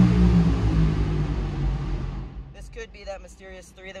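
A vehicle engine running loudly with a steady low hum, fading away over the first two seconds.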